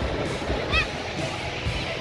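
Background music over the wash of small waves and crowd noise, with a brief high-pitched cry about three-quarters of a second in.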